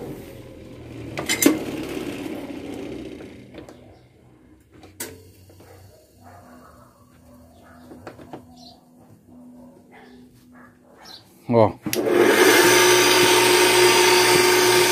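A quiet stretch with a few small clicks and knocks, then near the end a thump as a double-wheel bench grinder is switched on and runs with a steady loud hum and whine. It runs without wobbling.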